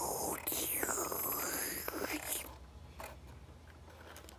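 A person's breathy, whispered vacuum-cleaner noises, made for the Noo-Noo toy as it cleans up: sweeping whooshes that fall and rise in pitch, stopping about two and a half seconds in. After that come a few faint clicks of plastic toy parts being handled.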